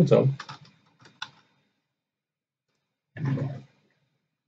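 A few computer keyboard keystrokes, short and light, in the first second or so, with speech trailing off at the start and a brief spoken sound near the end.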